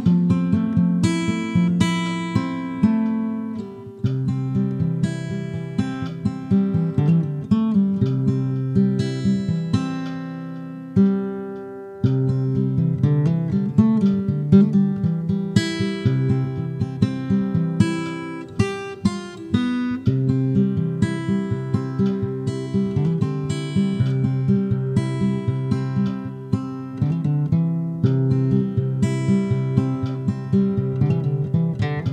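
Acoustic guitar music: a steady run of plucked notes over a low bass line, the phrase starting over about every eight seconds.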